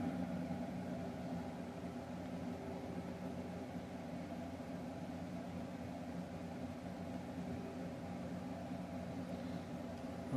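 Steady low background hum with a faint hiss, from running machinery.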